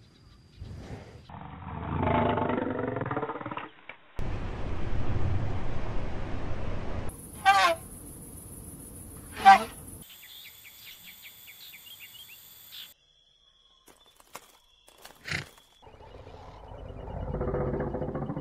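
Short recordings of wild savanna animal calls spliced one after another, the sound changing every few seconds. There are two sweeping calls, then a run of high rapid chirps, then a lower pitched call that grows louder near the end.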